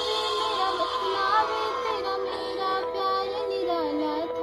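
A young woman's solo voice singing a slow melody, with held notes that slide between pitches, over a steady accompanying drone.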